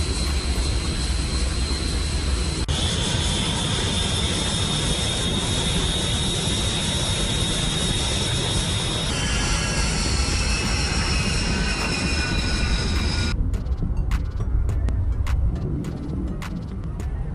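Su-25 attack jet's twin turbojet engines running on the ground: a steady loud roar with a high-pitched turbine whine that changes pitch at abrupt cuts. Near the end the whine drops away, leaving a lower rumble with scattered clicks.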